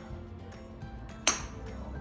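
A golf club striking a golf ball in one sharp crack about a second and a quarter in, over steady background music.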